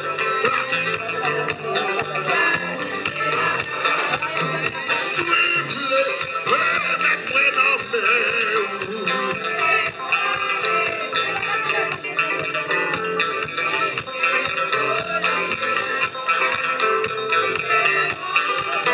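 Live worship band playing with a steady beat: electric guitars and a drum kit, with a lead singer's voice over them.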